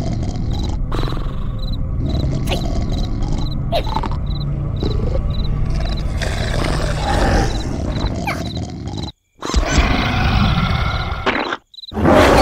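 Animated-cartoon sound effects: a steady, low, roar-like rumble under short, high cricket-like chirps repeating about twice a second. Near the end the sound cuts out suddenly twice.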